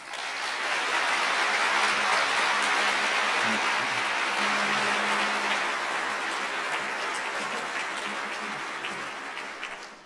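Large auditorium audience applauding, swelling quickly to full strength and then slowly dying away.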